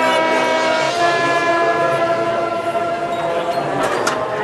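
Marching band's brass and woodwinds holding long, loud sustained chords, moving to a new chord about a second in, with a percussion hit near the end.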